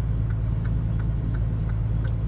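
Parked semi-truck's diesel engine idling, heard inside the cab: a steady low hum with a light regular tick about three times a second.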